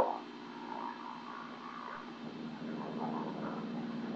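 Faint, steady drone of a light aircraft's piston engine, growing slightly louder toward the end.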